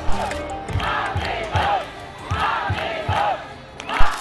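Protest crowd chanting a slogan in repeated shouted bursts, with women's voices loudest.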